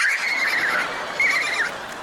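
Studio audience laughing, with one high-pitched squealing laugh held over about the first second and a half.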